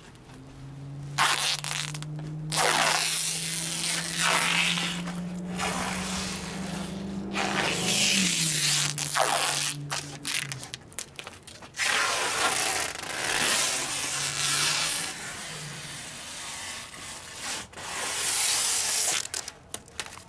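Plastic wrap being pulled off its roll in long stretches and wound around moving blankets, a hissing, crackling tear that repeats with short pauses. A low steady drone sits underneath for the first half and changes pitch about eight seconds in.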